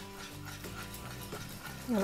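A silicone-coated whisk stirring a thick butter-and-flour roux in a metal saucepan as broth is poured in.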